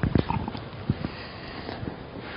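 A few soft, irregular knocks and taps: a short cluster at the start, then single knocks about a second in and again near the end.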